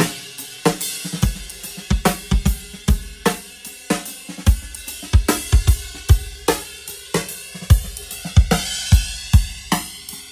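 Acoustic drum kit playing a steady groove of kick, snare, hi-hat and cymbals, flanged by running the recorded drums on a tape machine against a Pro Tools copy of the same tape, with a hand dragging the reel. A slowly rising sweep runs through the cymbals as the two copies drift in and out of time.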